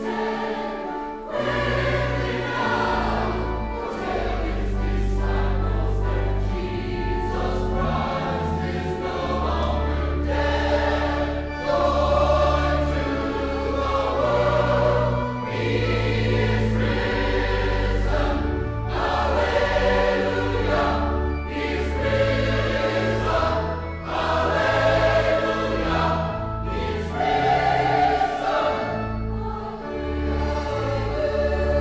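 Choral music: a choir singing over held low bass notes.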